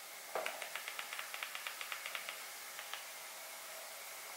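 TV-box remote control buttons pressed rapidly: a quick run of faint clicks, about six or seven a second for roughly two seconds, then one more click.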